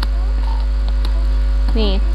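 A steady, low electrical hum, the loudest thing throughout, with a few faint steady higher tones above it; a voice starts briefly just before the end.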